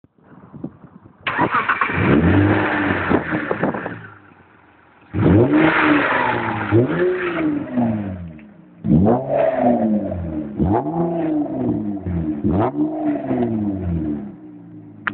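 Mitsubishi FTO GPX's 2.0-litre MIVEC V6 being revved in a test run: three loud bursts of throttle blips, each blip rising and falling in pitch, dropping back toward idle between them. In the last burst the blips come about a second apart.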